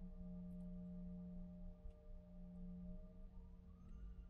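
Jet airliner's engines whining as heard inside the cabin while taxiing: a steady low hum with a few fainter higher tones over a low rumble. Near the end a further tone rises in pitch.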